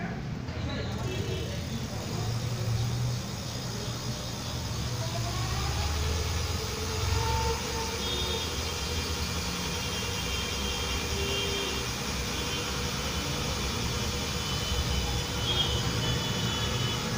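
Rear hub motor of an electric fat-tyre bicycle spinning the rear wheel freely, a steady hum with a faint high whine that comes and goes in the second half.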